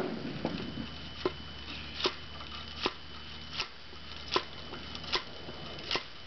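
Ramrod dropped and bounced on the felt wads over the powder charge in the barrel of a Thompson Center Hawken .54 muzzle-loading rifle, packing the charge. Eight sharp clicks come evenly, about one every 0.8 s.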